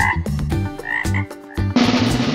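Frog croaks: a few short calls over low bass notes. Near the end, loud music with drums comes in suddenly.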